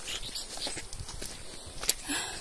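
Irregular light clicks and rustles of footsteps on a trail and the phone being handled while walking, with one sharper click near the end.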